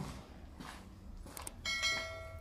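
Sound effects of a subscribe-button animation: faint clicks, then a short bright electronic bell chime near the end.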